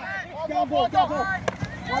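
Players' voices calling out across the field, quieter than a close voice. A single sharp click about one and a half seconds in.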